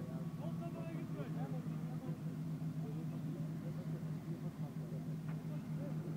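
Engine of a short-wheelbase Toyota Land Cruiser 70 running at steady low revs as it crawls slowly through mud, with people talking in the background.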